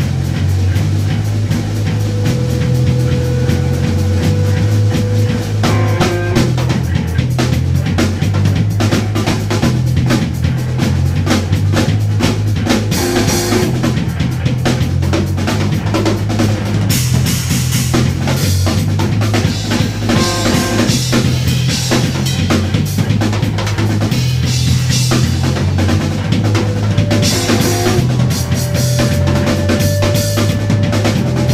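An instrumental rock band playing loud live, with a busy drum kit (kick, snare and rimshots) over sustained bass notes and a few held higher melodic notes.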